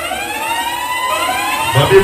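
Electronic siren-like sweep from a DJ's sound system: several tones glide upward together. A man's voice comes in near the end.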